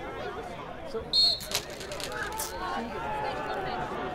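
Distant voices of players and spectators chattering across an open pitch. About a second in comes one short, sharp, high referee's whistle blast, the signal for play to restart after a stoppage, followed by a couple of sharp clicks.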